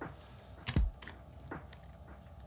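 Small clicks and taps from hands handling a baitcasting reel: one sharp click about two-thirds of a second in, then a few lighter ones.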